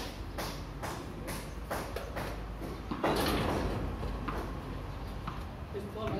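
Metal gate moving, with a scrape that starts sharply about three seconds in and dies away over about a second, after a run of short, evenly spaced clicks.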